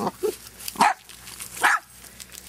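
Dachshunds barking right at the microphone: two loud, short barks about a second apart, after a smaller yip at the start.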